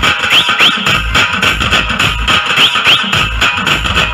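DJ remix of Telangana dappu folk drumming: a dense, fast drum pattern over a heavy bass beat, with short rising swoops that come in pairs every second or so.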